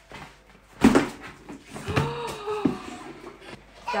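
Knocks and a loud clunk of hard plastic about a second in, with more knocks after: a large plastic surprise egg being pulled open.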